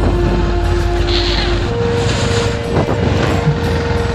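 Motorcycle engine running while riding, with wind rushing over the microphone; its steady note steps up in pitch a little before halfway.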